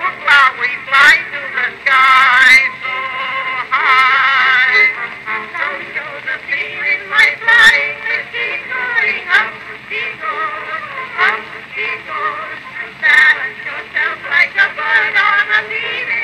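A 1911 acoustic cylinder recording of a vocal duet with accompaniment, played on a circa-1899 Columbia AT Graphophone and heard through its horn. It sounds like an old acoustic record, with no highest treble.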